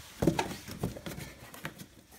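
Footsteps on a concrete floor: a few irregular, sharp knocks of boots as the person shifts and steps.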